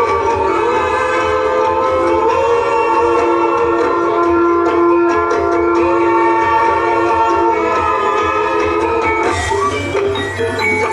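Live Javanese gamelan-style music for a kethek ogleng monkey dance, with drums and layered sustained tones, one long held note through the middle.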